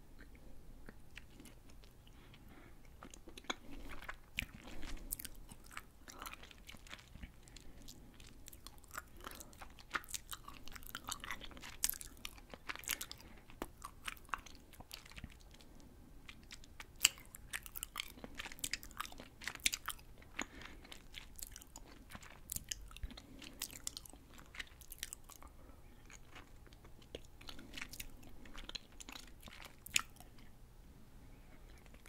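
Close-miked chewing of fruit jelly candy, with lip smacks and mouth clicks coming in irregular clusters throughout.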